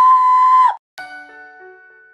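A woman's loud, high-pitched yell held on one steady note, cut off sharply under a second in. After a brief gap, soft intro music of struck, ringing bell-like notes, glockenspiel-style, begins.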